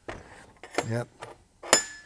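Metal engine bearing parts handled on a workbench: a few light clicks, then about three-quarters of the way in one sharp metallic clink that rings briefly as a part is set down.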